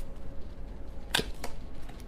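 A deck of tarot cards being shuffled by hand: a few soft card clicks and one sharper snap a little after a second in.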